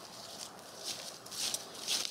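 Footsteps crunching through dry leaf litter on a forest floor, about four steps roughly half a second apart, the last ones loudest.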